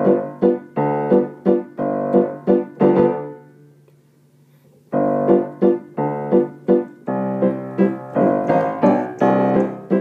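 Piano playing a song accompaniment alone, in repeated struck chords about two a second. About three seconds in, a chord is left to die away, and playing picks up again about five seconds in.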